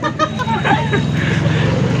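A motor vehicle's engine running close by, a steady low drone that grows stronger in the second half, with brief voices over it.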